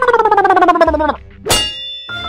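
Edited-in comedy sound effects: a wavering tone that falls in pitch for about a second, then a sharp metallic clang that rings briefly.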